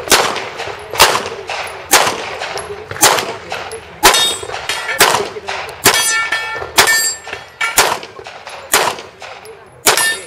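Pistol shots fired at a steady pace, about ten of them roughly a second apart. Several are followed by the ringing clang of steel plate targets being hit.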